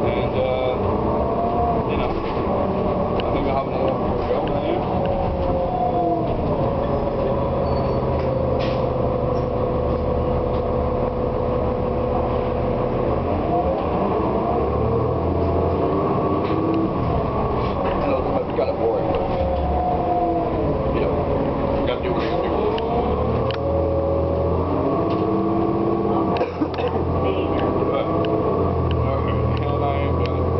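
Inside a moving city bus: the engine and drivetrain run with a whine that falls and rises several times as the bus slows and speeds up, under a low hum and scattered short clicks and rattles.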